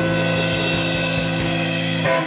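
Live band holding a single steady sustained chord, which cuts off at the end.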